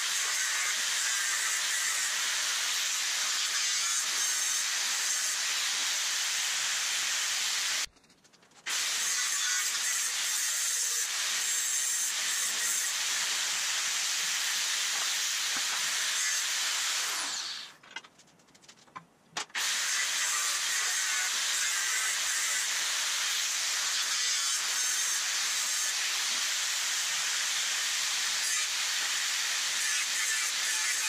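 Angle grinder with a thin cut-off disc cutting into a steel frame rail: a steady, high hissing whine. It breaks off twice, briefly about a quarter of the way in, and for about two seconds a little past halfway, winding down with a falling pitch before that second gap.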